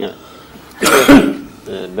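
A person clears their throat once, loudly, about a second in. A man then starts speaking near the end.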